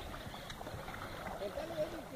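Faint outdoor background noise, with faint distant voices in the second half.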